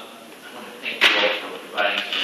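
A person speaking in a large meeting hall, the words indistinct, with sharp starts to the syllables, the loudest about a second in.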